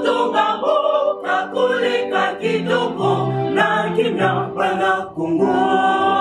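Music: a choir singing, held notes moving from chord to chord.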